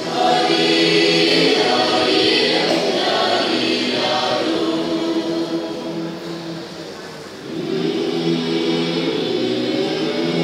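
Mixed church choir singing a Malayalam Christmas carol in long held notes. A phrase fades out about six to seven seconds in, and the singing comes back in strongly a moment later.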